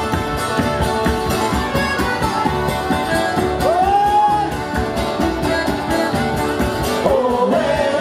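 Live folk band playing with a driving beat: strummed acoustic guitar, a second plucked string instrument and button accordion. A voice calls out once, rising and held, about four seconds in, and singing comes back in near the end.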